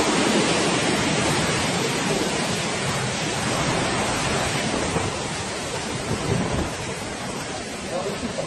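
Large sea waves breaking and washing in: a loud, continuous rushing noise with a low rumble that slowly fades.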